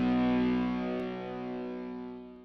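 Rock music: a distorted electric guitar chord held and slowly fading. It is the final chord of the song, ringing out with no new notes struck.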